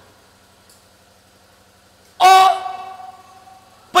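A loud, drawn-out vocal exclamation of 'Oh!' about two seconds in, held on one pitch for most of a second and then trailing off, after a quiet stretch with only a faint hum.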